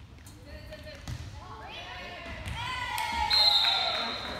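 Volleyball being played in a gym: a few sharp ball hits, then players and spectators shouting and cheering. The voices build to a loud, high-pitched cheer near the end as the point ends.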